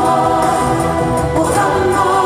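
Rock opera chorus singing long held chords, moving to a new chord about one and a half seconds in.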